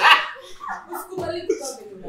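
A man's loud burst of laughter that falls away within about half a second, followed by a few short, quieter bursts of laughter.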